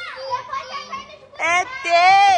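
Young children's high-pitched voices, babbling and squealing, with the loudest squeal in the last half-second.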